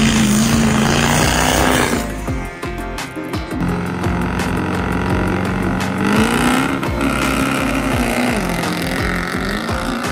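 Diesel pickup trucks running hard and launching down a dirt drag strip, mixed with background music that has a steady beat. The sound changes abruptly about two seconds in, where the footage is cut.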